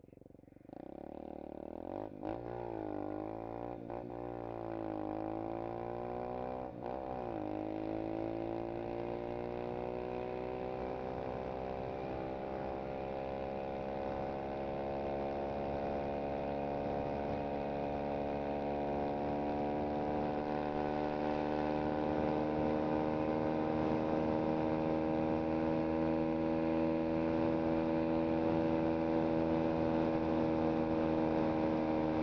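2017 SSR SR125 pit bike's single-cylinder four-stroke engine pulling away under throttle. It comes in loudly about a second in, rising and dropping in pitch several times with a few sharp clicks as it shifts up, then holds one gear with its pitch and loudness climbing slowly as the bike builds toward top speed.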